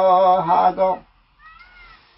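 A man singing a Limbu hakpare samlo, holding a long wavering note that ends about a second in. A faint, brief high sound rises and falls near the end.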